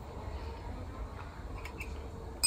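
Quiet room tone: a low steady hum with a couple of faint ticks near the end.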